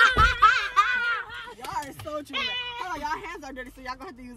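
Excited voices of young girls: a long, held, high-pitched squeal that ends about a second in, followed by short excited cries and exclamations.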